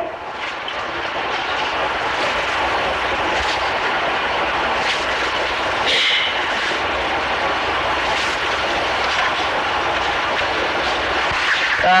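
Steady hiss and room noise on an old cassette recording of a lecture hall, with a few faint clicks and a faint steady whine underneath.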